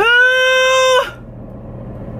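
A woman's loud, drawn-out yell that sweeps up quickly in pitch, holds one steady note for about a second, then breaks off.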